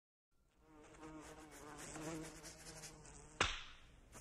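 A fly buzzing, its drone wavering in pitch and loudness, cut by a single sharp smack about three and a half seconds in.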